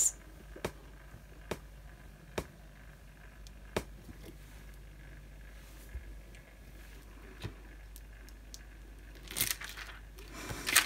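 A wooden stamp block pressed by hand onto a plastic laminating pouch: faint, scattered small clicks and creaks from the block and film under the hands over a low steady hum. Near the end the plastic film crinkles as the stamp is peeled up off the pouch.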